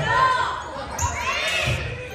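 A volleyball being struck during a rally in a large gym: a few dull thuds of hands and arms on the ball, under the high calls and shouts of girls' voices.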